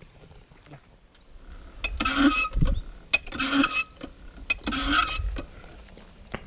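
Old cast-iron hand water pump being worked: three strokes of the handle about a second and a half apart, each a short, loud rasping noise. The pump is not drawing water.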